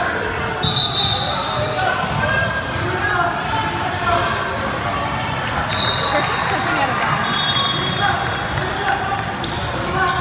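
Basketball game heard in an echoing gym: spectators chattering indistinctly, a ball bouncing on the hardwood court, and several short, high-pitched squeaks.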